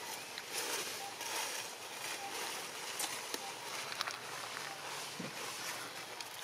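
Outdoor ambience: a steady hiss with a few sharp clicks and soft rustles scattered through it.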